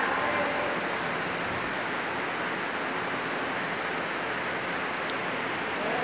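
Steady, even hiss of indoor background noise with no distinct event in it.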